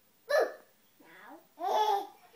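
Baby laughing in short bursts: a sharp, loud one about a third of a second in and a longer one near the end, with a fainter sound between them.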